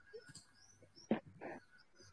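Faint high chirps of small birds in the background, with two short, soft sounds a little after a second in.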